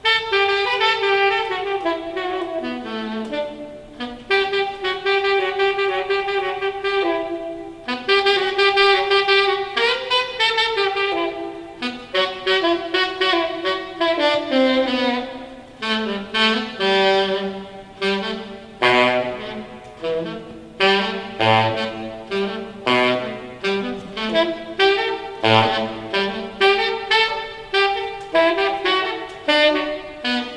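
Saxophone playing jazz, holding long notes for the first several seconds and then moving into quicker runs of short, separately tongued notes.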